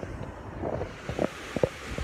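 Wind on a phone's microphone, with a few soft knocks as the phone is moved around.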